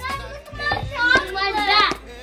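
Children's voices chattering and calling out over background music.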